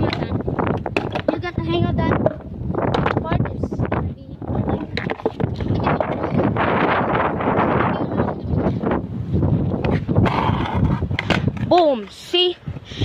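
Skateboard wheels rolling over rough, grooved concrete, a continuous grinding rumble loudest about halfway through, with short bursts of voices near the start and the end.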